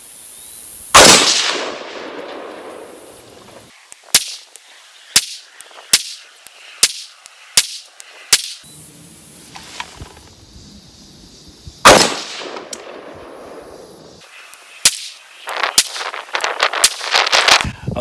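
Bear Creek Arsenal AR-15 in 6.5 Grendel fired from a bench rest: two loud rifle shots about eleven seconds apart, each with a ringing tail lasting a second or two. Several quieter, sharp cracks fall between and after them.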